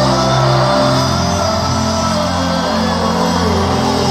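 Live band music at a concert, an instrumental passage with little or no singing, amplified through the arena sound system.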